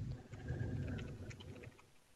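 Faint computer keyboard typing: a scatter of light keystroke clicks over a low background rumble, dying away near the end.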